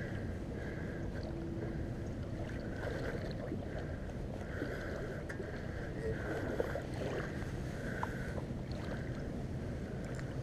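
Steady rush of shallow river water around a wader's legs, with faint, intermittent whirring from a spinning reel being cranked while fighting a hooked steelhead.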